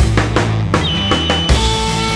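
Rock band mix of drums, bass and several distorted electric guitar tracks through a germanium fuzz pedal (Wrought Iron Effects H-1), with a steady drum beat. A held high note comes in about halfway through.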